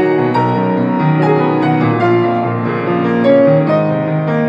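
Grand piano being played: a flowing run of chords and melody notes, each new note struck over the ringing of the ones before.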